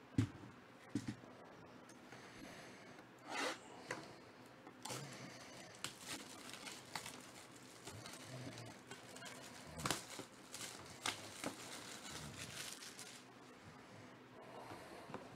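Clear plastic shrink wrap being torn and crinkled off a cardboard box, a run of crackling with many small clicks. Two sharp knocks from handling the box come in the first second.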